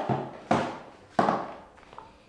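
Three sharp knocks, the first right at the start, then about half a second and a second later. Each trails off over roughly half a second.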